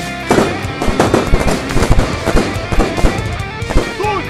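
Handgun shots fired in rapid, irregular succession by several shooters, a dozen or more sharp cracks starting about a third of a second in, over electric-guitar rock music.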